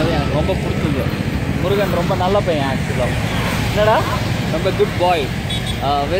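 Voices talking intermittently over a steady low rumble from the street.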